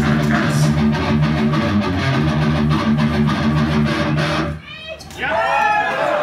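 Distorted electric guitar played through a stage amplifier in a repeated low riff that stops about four and a half seconds in. A man's amplified voice follows.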